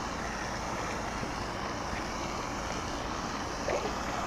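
Steady outdoor background hiss, with low rumble like wind on the microphone; no distinct sound stands out.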